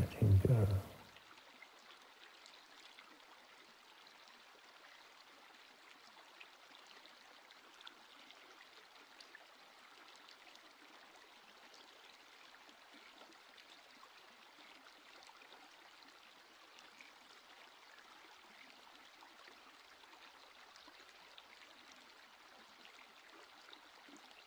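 Very faint, steady rushing background noise, close to silence, with no rhythm or tone.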